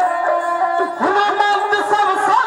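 Dhadi folk music: a sarangi bowed in a sliding melody over struck dhadd hourglass drums.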